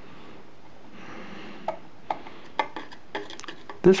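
Hand screwdriver driving a wood screw into a wooden baseboard: a faint scraping turn, then a run of irregular sharp clicks and ticks from a little under halfway, coming faster near the end.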